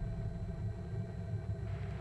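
A low, steady rumble with faint sustained tones above it.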